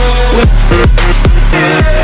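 Background electronic music with a steady, heavy beat of about two to three bass thumps a second under sustained notes.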